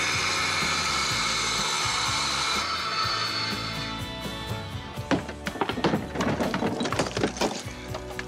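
Bosch angle grinder with a diamond blade cutting through brick, a loud steady grinding whine that thins out after about three seconds and fades away. From about five seconds in, a run of sharp knocks and cracks as the cut bricks are hammered and broken out.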